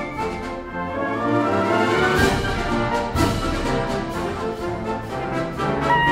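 Orchestral background music with brass.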